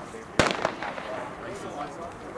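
Starter's pistol fired once, about half a second in: a single sharp crack with a brief echo, signalling the start of a sprint race. Voices follow.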